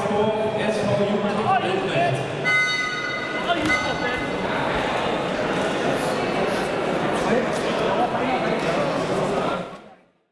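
Indistinct chatter of many people echoing in a large sports hall. A brief high tone sounds about two and a half seconds in, and the sound fades out near the end.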